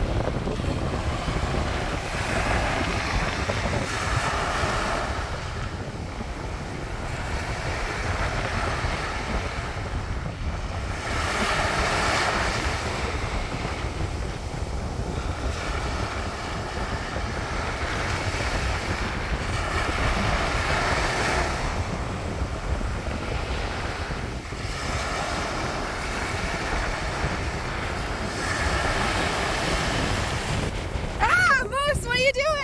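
Ocean surf breaking and washing up a sandy beach: a hissing wash of foam swells and fades about every eight seconds, four times. Underneath runs a steady rumble of wind on the microphone.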